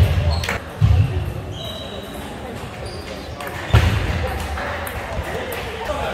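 Table tennis rally: sharp clicks of the celluloid ball on bats and table, a few with a brief high ring, and heavy thuds of players' feet on the sports floor near the start, about a second in and near four seconds. Voices talk in the hall in the second half.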